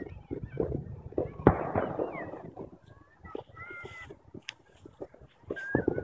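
Fireworks: one sharp bang about a second and a half in, followed by a crackling tail, with scattered smaller pops around it.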